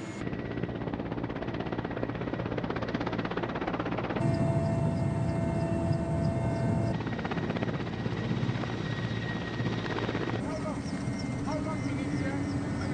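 Transport helicopter's rotor and turbine engines running, a steady rotor chop with a high whine. The sound changes abruptly at cuts about four, seven and ten seconds in, between the view from outside and from inside the cabin.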